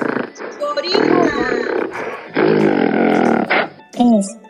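Recorded gorilla calls played back over a video call, in three long loud bursts, with brief voices between them.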